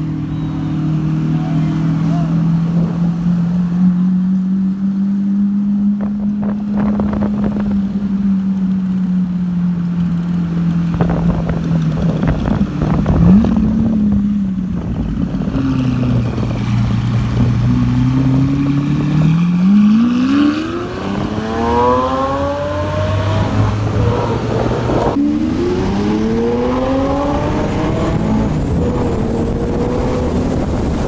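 Lamborghini supercar engine running at low, fairly steady revs, then revving up in long rising sweeps as it accelerates, twice in the last ten seconds.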